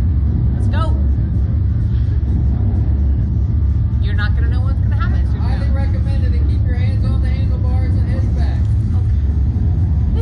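A steady, heavy low rumble, with indistinct voices in the background from about four seconds in.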